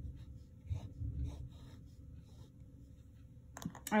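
A pen writing on lined notebook paper in a run of short strokes as a fraction is written and a box is drawn around it. The strokes thin out about halfway through.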